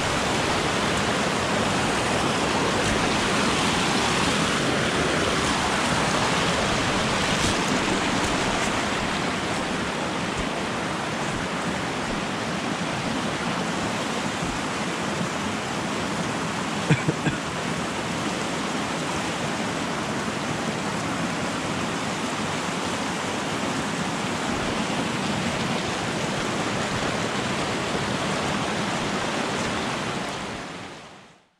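Small mountain stream rushing over rocks close by, a steady rush of water. About seventeen seconds in come three quick, sharp knocks.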